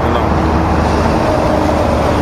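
Steady low rumble of motor-vehicle noise with a faint hum, even throughout.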